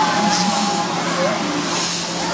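Fairground crowd noise: mixed voices and shouts from riders and onlookers over a steady hiss and a constant low hum from the running ride.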